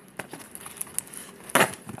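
Serrated knife cutting through packing tape on a cardboard box: scattered small clicks and scrapes, with one louder, short tearing burst about one and a half seconds in.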